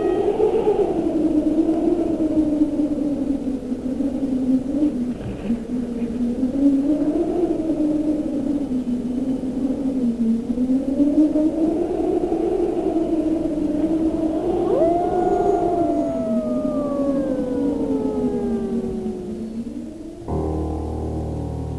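Film-score music: a sustained, siren-like tone that slowly wavers up and down in pitch. About three quarters of the way in, a long downward glide sets in, and the sound cuts off at the end.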